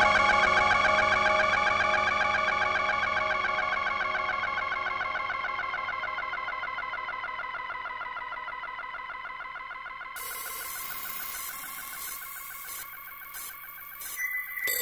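Ambient electronica: a sustained synthesizer drone with a fast, shimmering wobble, fading slowly. About ten seconds in, faint glitchy crackles and clicks come in over the dying tone.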